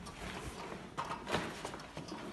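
A few sharp knocks, one about a second in and two more soon after, over a low background rumble.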